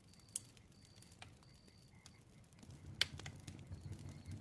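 Faint campfire crackling: scattered small pops and snaps, with a sharper snap about three seconds in and a low rumble building near the end.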